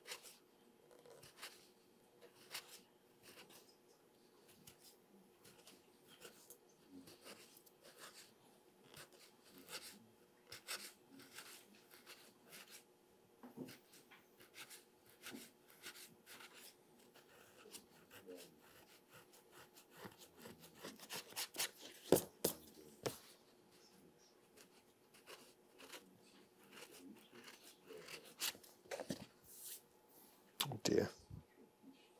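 Faint, irregular short scraping strokes of a paring knife thinning paper-laminated calf vellum to a tapered edge, the strokes coming thickest about two-thirds of the way through.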